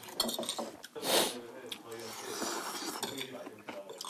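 Spoons and chopsticks clinking against ceramic bowls as people eat soup, with many small clicks and a short rush of noise about a second in.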